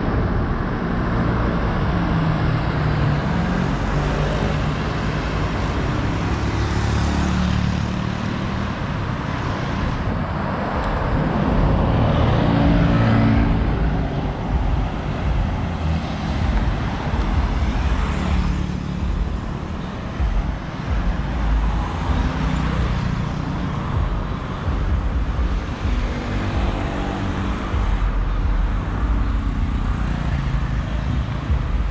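Street traffic: cars and motorbikes driving past one after another over a continuous low rumble of road noise, with several passes swelling louder.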